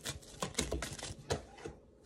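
Tarot cards shuffled by hand: a quick, irregular run of light card clicks and flicks that stops shortly before the end.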